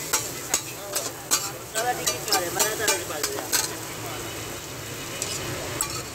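Metal spatulas striking and scraping a large flat tawa griddle as an egg-and-mince mixture is chopped and stirred, over a steady sizzle of frying. The quick, irregular clicks of the strikes run for about the first three and a half seconds, then the sizzle carries on alone.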